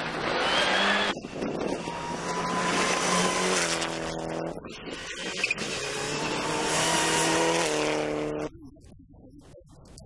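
Rally car engines at full throttle on a gravel stage, revving hard with quick gear changes, over the hiss of tyres on loose gravel. About eight and a half seconds in the sound drops to a much fainter, more distant car.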